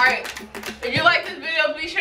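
A woman talking, with no other distinct sound: speech only.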